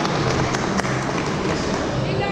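Mack Rides mega coaster train rolling slowly through the station: a steady rumble with a low hum and a few light clicks.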